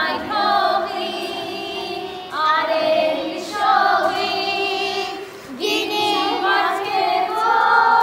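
A group of children singing a song together, in three phrases with short breaks between them.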